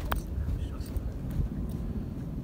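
A mallet putter striking a golf ball: one sharp, slightly ringing click just after the start. Low wind rumble on the microphone runs underneath.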